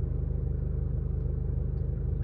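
Vehicle engine idling, a steady low rumble with an even pulse, heard from inside the cabin.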